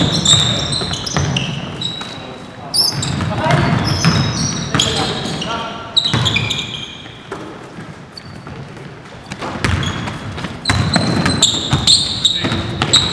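Indoor basketball game on a hardwood court: sneakers squeaking in short high chirps and the ball bouncing as it is dribbled, under indistinct players' voices. It thins out briefly about two-thirds of the way through.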